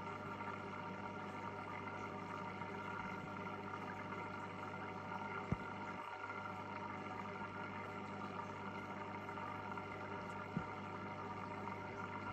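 Steady low electrical hum of an aquarium's running equipment, most likely the filter pump motor, over a faint hiss. Two brief soft clicks come about five seconds apart.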